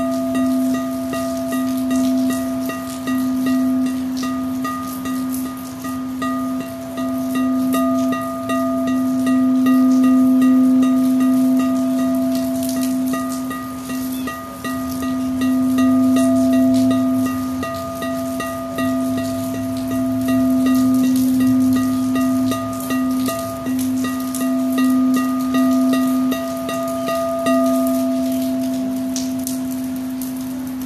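Crystal singing bowls being played with a mallet: a low steady ringing tone with higher overtones above it, swelling and easing in slow pulses. The higher tones die away near the end while the low tone rings on.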